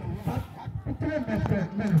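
Speech only: voices talking, with no other distinct sound.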